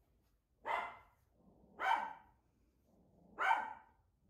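A dog barking three times, with short pauses between the barks.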